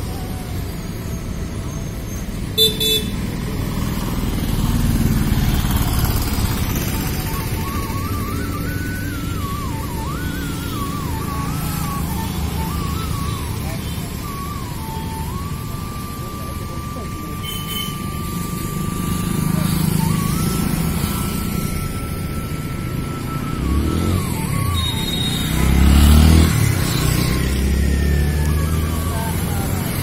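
Road traffic with motorcycles and cars passing, one passing close and loud about four seconds before the end. Over it, a thin, high melody wavers and then holds two long notes through the middle.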